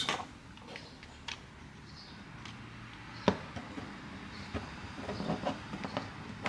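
Handling sounds: a few light clicks and taps of a hand tool against the plastic frame of a GoPro Media Mod, with one sharp click about three seconds in, over a low steady hum.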